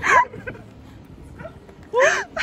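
A short, loud, high-pitched cry from a person's voice right at the start, and another cry rising in pitch just at the end, with quieter sound in between.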